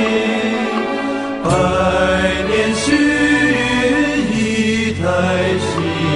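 Theme song: a voice singing slow, drawn-out lines in Chinese over instrumental accompaniment, with a new phrase starting about a second and a half in.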